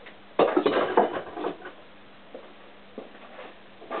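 Small loose metal parts and tools clinking and clattering as they are handled and rummaged through, busiest in the first second or so, then a few light clicks.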